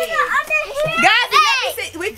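Young children's high-pitched, excited voices, shouting and calling out as they play.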